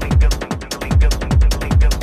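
Techno DJ mix at 150 bpm: a kick drum on every beat, each one dropping in pitch, with hi-hats ticking above. One kick drops out briefly about a quarter of the way in before the beat returns.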